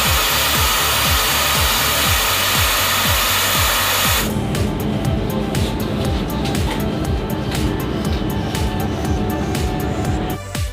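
Taber abrasion tester running with a steady rushing noise for about the first four seconds, cutting off suddenly. Background music with a beat plays throughout.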